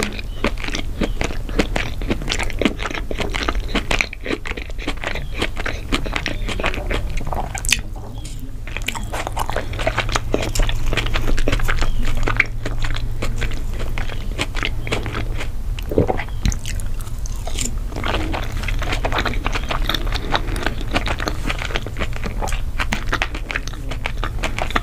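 Close-miked chewing and crunching of crispy fried balls, a dense run of irregular wet and crisp mouth sounds, over a low steady hum.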